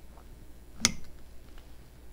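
A single sharp click a little under a second in: a small steel cleaver knocking against a marble cheese board while slicing summer sausage.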